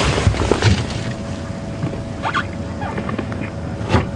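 Lioness feeding on a buffalo carcass, with irregular tearing and chewing noises over a faint steady hum.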